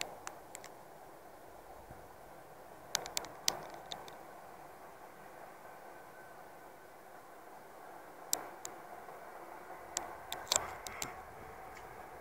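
Faint steady hiss from a handheld camera recording, broken by scattered sharp clicks and rustles of handling. The clicks come in small clusters about three seconds in, about eight seconds in, and around ten to eleven seconds.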